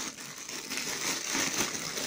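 Thin plastic bag rustling and crinkling as a hand rummages inside it, an irregular crackly rustle.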